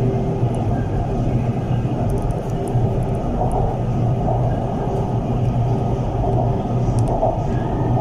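An MRT Kajang Line metro train running along elevated track, heard from inside the car: a steady rumble of wheels and running gear with a faint steady hum over it.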